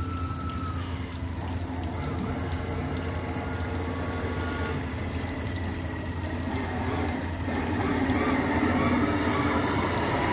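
Motor of a 2.5 m radio-controlled model barge running, with the churning of its propeller and bow wash in the water; the sound grows louder over the last few seconds as the barge comes close.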